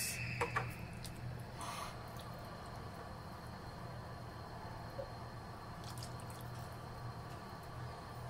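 Faint liquid sounds of evaporated milk pouring from a can into a plastic measuring scoop and into the soup, with a few light clicks, over a steady low hum.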